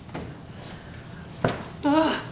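Faint rustling of a cushion being handled, with one sharp thump about one and a half seconds in as it is pushed down into a wooden cradle.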